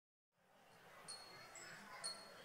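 Dead silence that gives way about half a second in to faint hall room tone, with a few brief, thin, high-pitched tones.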